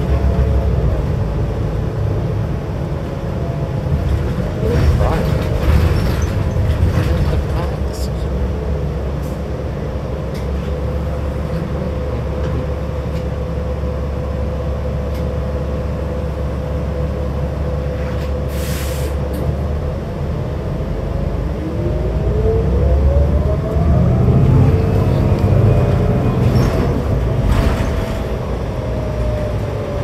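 Cabin sound of a New Flyer XD60 diesel articulated bus under way: the engine and driveline drone steadily, with a whine that drops early on, holds level while the bus cruises or waits, then climbs as it pulls away about two-thirds of the way through. A short air hiss comes a little past the middle.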